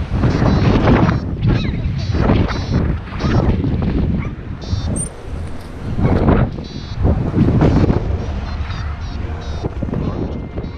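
Wind buffeting the microphone of a camera on a tandem paraglider during the launch run and takeoff: a loud, uneven rumble that surges in gusts about a second in and again around six to eight seconds.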